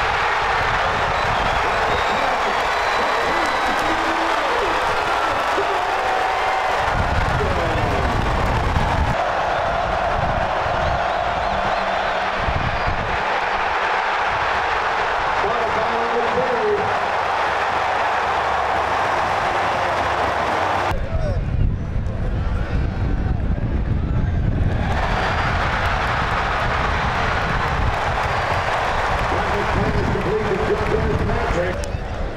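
A large football stadium crowd cheering and shouting, with scattered voices and clapping. The crowd sound changes abruptly several times as the clips cut from play to play.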